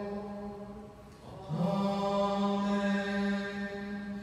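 A man's voice chanting a Mass prayer on a single steady reciting tone. The chant breaks off briefly about a second in, then slides back up onto the same held note.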